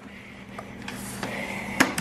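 The telescoping trolley handle of a King Song 16S electric unicycle being pulled up from the shell. It slides out with a rising scrape and clicks sharply into its extended position near the end.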